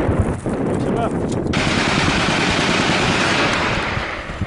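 Gunfire in a firefight, with sharp cracks early on. About a second and a half in, a loud, steady rushing noise starts suddenly and lasts to the end.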